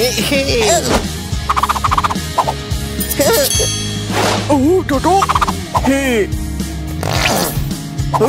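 Cartoon characters' wordless, high-pitched, warbling gibberish voices over background music, with whooshing sound effects about four seconds in and again near the end.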